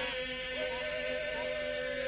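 Albanian Lab polyphonic folk singing by a group: a steady held drone with a voice line wavering above it.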